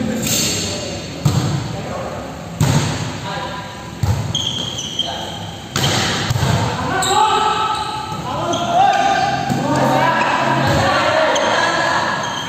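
A volleyball being hit by players' hands, four sharp echoing smacks in the first six seconds, in a large hall. From about halfway, players' voices call out over the play.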